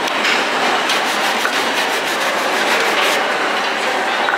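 Hand brush scrubbing a sneaker in quick, rhythmic strokes, plainest between about one and three seconds in, over a steady hiss.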